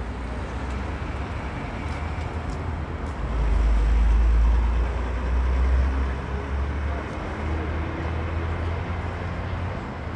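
City street traffic noise with a low rumble, as a vehicle passes, loudest about three to five seconds in.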